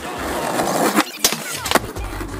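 Skateboard wheels rolling on concrete, growing louder. About a second in come three sharp clacks of the board hitting the ground.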